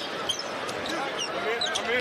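Basketball being dribbled on a hardwood court, with short high squeaks from sneakers on the floor over a steady arena crowd noise.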